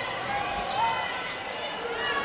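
Basketball being dribbled on a hardwood court under a steady murmur of arena crowd voices.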